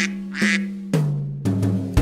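Two duck quacks about half a second apart over held notes of the song's backing music, which picks up again near the end.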